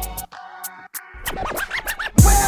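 DJ scratching a record in a hip hop mix: the beat thins out and the bass drops away in the first second, then quick scratches sweep up and down in pitch through the second half.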